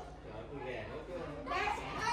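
Quiet background chatter of several people talking at once, growing louder near the end.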